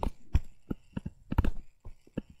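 Irregular sharp taps and clicks of a pen on a writing surface during handwriting, about a dozen, with the loudest cluster near the middle.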